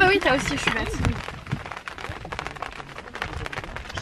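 A woman's voice briefly at the start, then a person chewing a mouthful with low outdoor background noise.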